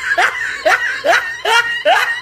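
A woman's nervous laughter in a run of short bursts, each falling in pitch, about two a second.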